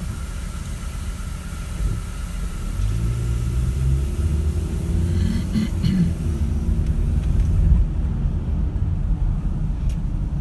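Car engine and road rumble heard from inside the cabin, growing louder about two seconds in as the car pulls away from a standstill at traffic lights.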